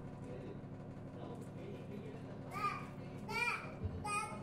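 Faint child's voice in the background, two short calls in the second half, over a low steady hum.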